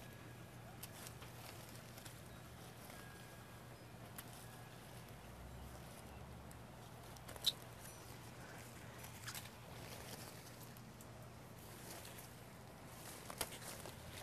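Hand pruning shears snipping laurel stems now and then, with faint rustling of leaves; a few sparse sharp clicks, the clearest about seven and a half seconds in.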